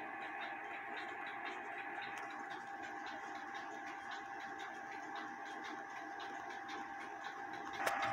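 Bare spring-driven movement of a 1928 Lux Blossom Time clock, with a hairspring balance escapement, ticking quickly and evenly. It is running out of its case again after its shifted pallet fork was reset.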